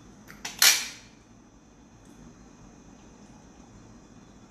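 A metal spoon clinking against ceramic tableware: two light clicks, then one sharp clink about half a second in that rings briefly.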